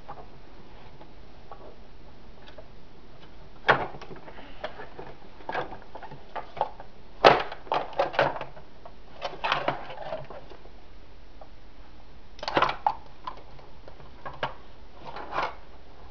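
Plastic parts of a Play-Doh Cookie Monster set being handled and knocked on a wooden table, with the dough pressed into the figure: irregular short knocks and clacks, the loudest about seven seconds in.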